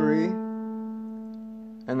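A single note plucked on a Fender electric guitar, ringing out clean and fading slowly for almost two seconds.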